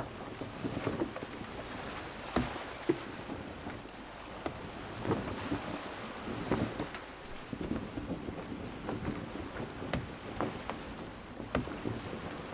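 Wooden sailing ship at sea: steady wind and water noise, with scattered short knocks and creaks from the ship.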